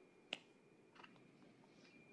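Near silence: room tone with a faint steady high tone, one sharp click about a third of a second in and a fainter click about a second in.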